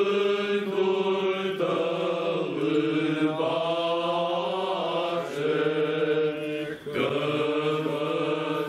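Group of Orthodox clergy, men's voices, chanting a liturgical hymn together without accompaniment, the held notes shifting every second or so, with a brief break about seven seconds in.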